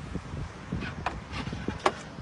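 Rear storage compartment lid of a car being opened by hand: a run of light knocks and clicks, with one sharp click near the end.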